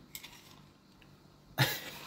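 Mostly quiet room tone with a few faint ticks. About one and a half seconds in, a person makes a short, sharp vocal sound whose pitch falls, like a brief cough or grunt.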